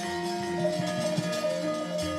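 Javanese gamelan playing softly, its metallophone notes ringing and held.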